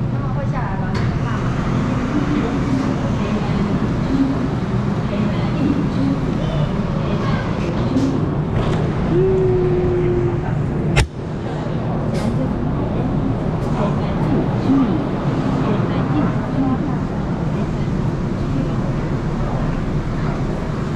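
Busy subway station and train ambience: a constant low rumble under the chatter of a crowd of boarding passengers. A brief steady tone sounds about nine seconds in, and a single sharp knock comes about eleven seconds in.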